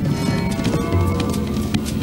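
Orchestral-style background music over the hoofbeats of galloping zebras.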